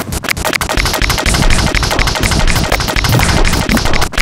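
Experimental electronic music played live on a modular synthesizer: a fast, dense stream of noisy clicks and crackling pulses reaching from deep lows to highs.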